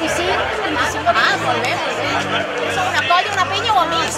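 Women talking over one another, with music playing in the background.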